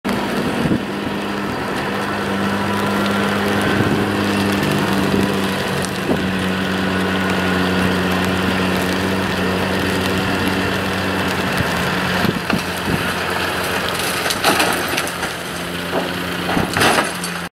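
An engine idling steadily close by. In the last few seconds, knocks and scrapes come as the overturned rallycross car is pushed back over onto its wheels.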